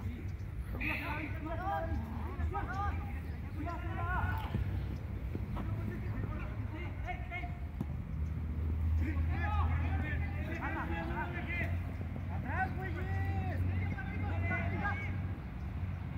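Players' voices shouting and calling across a football pitch, heard from a distance, over a steady low rumble.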